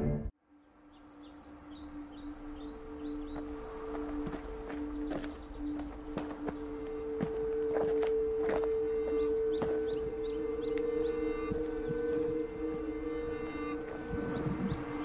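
A low soundtrack drone of two held notes sets in about a second after the previous music cuts off, and carries on steadily. Over it a small bird chirps in quick runs of short falling notes, twice, and there are light scattered steps on a dirt track.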